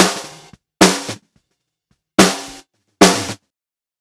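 Four snare drum hits from a recorded snare track, each cut off within about half a second by a Dyn3 expander/gate triggered from its key input, leaving dead silence between hits.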